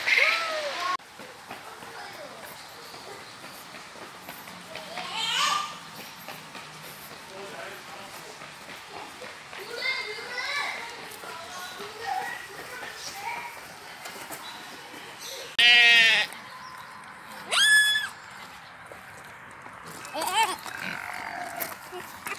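Short high calls and babble from a small child, and about two-thirds of the way through a loud, wavering bleat from a farm animal, followed by a shorter high call.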